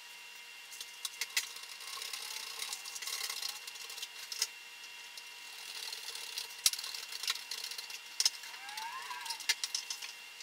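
Scattered clicks, taps and knocks of a screwdriver, screws and small plastic and foam parts being handled on a wooden table, over a faint steady high whine. One sharper knock stands out near the middle.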